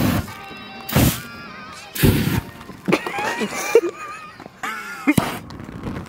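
Two short whooshes of an aerosol spray igniting into a fireball, about one and two seconds in, over background music, with laughter in between.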